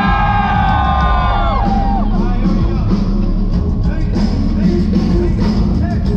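Live rock band music heard loud from within the crowd. A long held note bends up at the start and slides down about a second and a half in, over a steady full-band backing.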